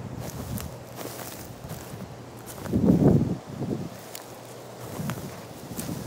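Slow, irregular footsteps on dry grass and leaf litter, with a louder, heavier thud about halfway through.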